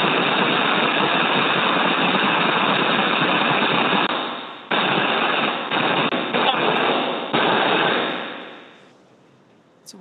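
Loud, steady rushing hiss of air flowing through the SpaceX EVA suits, picked up by the suit microphones over the crew radio loop. It is the expected background noise of the pressurized suits' air flow. The hiss fades out briefly about four seconds in, dips twice more, then fades almost away over the last two seconds.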